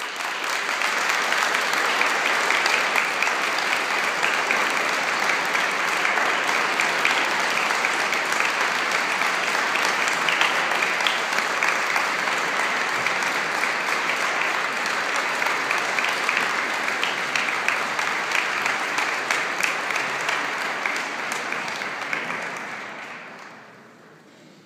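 Audience applauding after an orchestral performance: dense, steady clapping that starts abruptly and dies away near the end.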